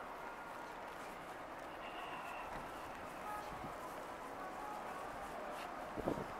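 Steady outdoor background noise in a parking lot, with no distinct event, and a faint click near the end.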